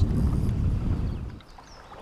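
Wind buffeting the microphone with a low rumbling noise, which dies away about a second and a half in and leaves a quiet open-water background.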